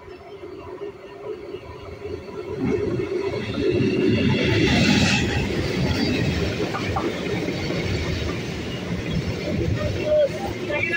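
Conventional electric multiple unit (EMU) local train approaching and passing close by. The rumble of its wheels on the rails grows over the first few seconds and is loudest as the front cars go by, about five seconds in. It then carries on steadily as the coaches run past.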